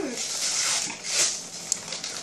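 Paper wrapper being peeled and torn off a chocolate bar by hand, rustling in a couple of swells, with a sharp crackle near the end.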